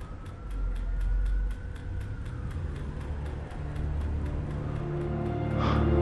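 Trailer soundtrack: steady ticking about four times a second over a low traffic-like rumble, with a faint tone that rises and then falls early on. A low music drone swells and thickens toward the end.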